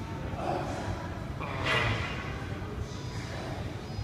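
Stifled laughter: short breathy snorts close to the microphone, the strongest about a second and a half in, over a steady low hum.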